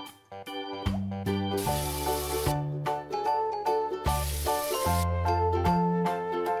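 Bright, cheerful keyboard background music, with two short hissing bursts of a running-shower water sound effect about two and four seconds in, each under a second long.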